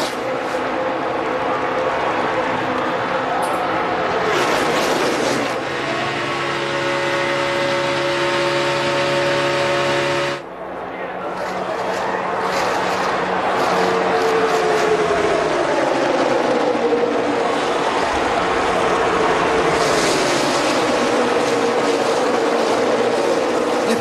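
A pack of NASCAR Cup stock cars running at full speed, their V8 engines a steady many-toned drone over a loud crowd roar. The sound dips for a moment about ten seconds in, and in the second half engine pitches sweep down and back up as cars pass.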